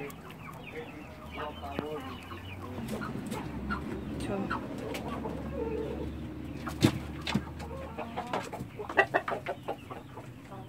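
Chickens clucking, with a single sharp knock about seven seconds in and a quick run of clicks near the end.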